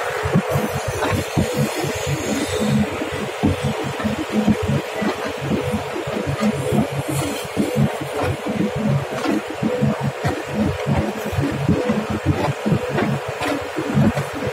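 Clay mixing machine running: its screw auger churns wet brick clay over a rapid, uneven low throb from the drive, with a steady hum above it.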